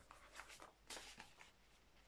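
Near silence with a few faint, short rustles of an album and its paper being handled, the clearest about a second in.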